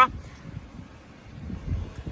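Low, even background noise with a rumble of wind on the microphone that swells near the end.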